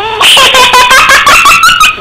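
Loud laughter in quick, rhythmic ha-ha pulses that stops abruptly near the end.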